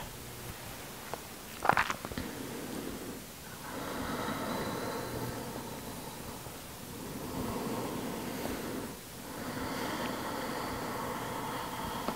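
Slow, deep breathing close to the microphone, long breaths that swell and fade over several seconds each, with a short sharp intake near the start.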